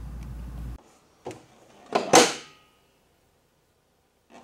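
A steady low hum cuts off abruptly about a second in. A faint knock follows, then about two seconds in comes a loud whoosh, a short rush of noise that fades out, typical of an editing transition effect, and then silence.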